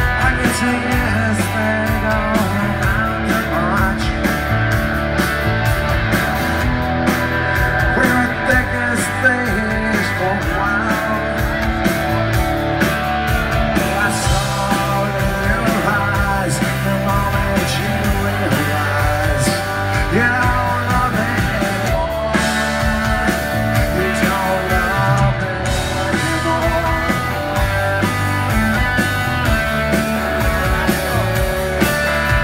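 A rock band playing live: electric guitars over a steady drum beat, recorded from the crowd in a concert hall.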